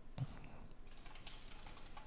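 Typing on a computer keyboard: faint keystrokes, a quick run of them in the second half, after a brief soft thump a fraction of a second in.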